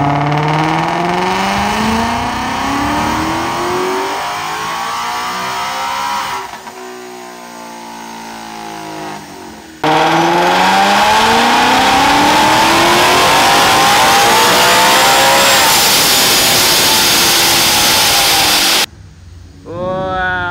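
Supercharged 5.0 V8 of a 2020 Ford Mustang GT at full throttle on a chassis dyno, run with the intake filter removed. Its pitch climbs steadily, then eases and falls as it winds down. Near the middle it comes back loud and climbing again, a high supercharger whine rising over the engine, before cutting off suddenly near the end.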